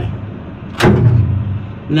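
A military vehicle's starter engaging with a sharp clunk about a second in, followed by a short low rumble that dies away without the engine catching: the batteries are too weak to crank it.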